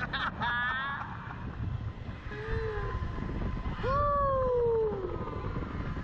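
Two riders laughing in a swinging slingshot ride capsule, then one long falling vocal cry about four seconds in. A steady low rumble of wind on the microphone runs underneath.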